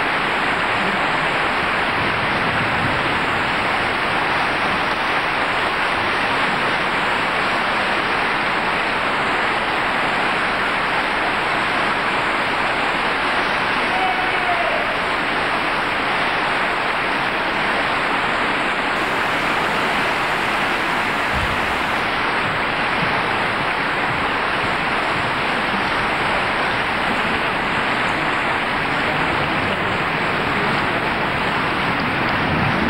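Large audience applauding steadily, an even wash of clapping that holds without a break.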